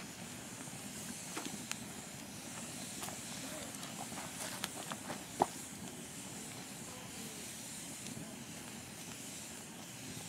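Wood campfire burning in a steel fire ring: a steady faint hiss with a few sharp crackles and pops, the loudest about five and a half seconds in.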